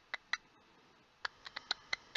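Tarot cards being handled, making short, sharp clicks and taps: three near the start, then a quicker cluster of about five in the last second.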